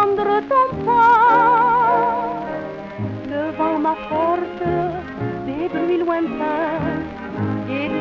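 A 1930s French popular song playing from a 78 rpm shellac record on a turntable: a woman singing with wide vibrato over orchestral accompaniment.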